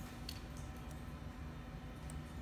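Steady low room hum with one or two faint clicks a fraction of a second in, from a computer being operated by hand.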